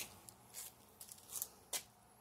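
A few faint rustles and light clicks of a phone being handled and turned, with a sharper click about three-quarters of the way in.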